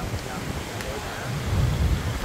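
Wind buffeting the microphone and a low rumble of road noise from an open-sided cart rolling along a street. The rumble grows louder near the end.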